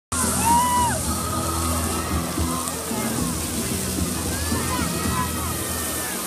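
Musical fountain's water jets spraying with a steady hiss, under music and the voices of people nearby.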